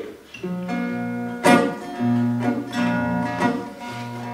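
Acoustic guitar playing a song's introduction: a few strummed chords, each left to ring before the next.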